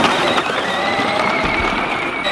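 Battery-powered kids' ride-on toy tractor driving, its electric motor and gearbox giving a steady high whine.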